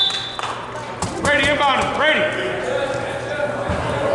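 Sounds of a basketball game in a gym: a few sharp knocks of a basketball bouncing about a second in, with players' and spectators' voices echoing in the hall.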